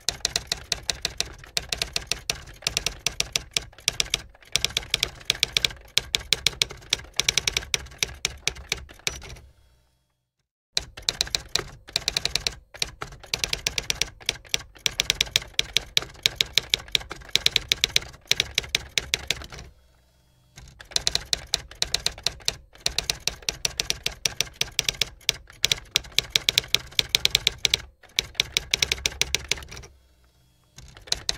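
Typewriter sound effect: rapid, continuous key clatter. It breaks off for about a second a third of the way in, and pauses briefly again about two-thirds through.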